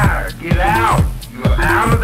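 Techno record playing in a DJ mix: a steady kick drum with a repeated vocal sample whose pitch swoops up and down.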